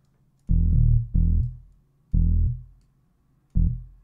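Single low synth-bass notes from Logic Pro's ES M monophonic synth, around E1, sounded one at a time as they are clicked into a 303-style bassline. There are four short notes, each starting sharply and dying away: two in quick succession, one about two seconds in, and a shorter one near the end.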